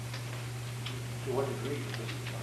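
A steady low electrical hum on the recording, with a few faint ticks and a brief quiet voice about a second and a half in.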